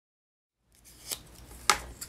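Silence for the first third, then pink cardstock pieces rustling as they are handled and shaped, with a faint tick about a second in and a sharp click shortly before the end.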